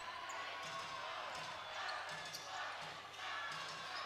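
Basketball being dribbled on a hardwood court, faint against a steady murmur of crowd voices in a gymnasium.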